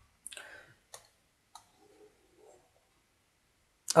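Three short clicks of a computer mouse, a little over half a second apart, with a faint rustle after the first and another soft scrape a little later.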